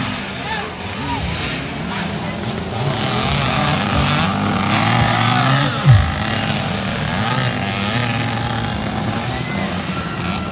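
Several off-road dirt bike engines racing around a motocross track, revving up and down. They grow louder a few seconds in, with a brief loud burst of falling pitch just before six seconds. Crowd voices mix in.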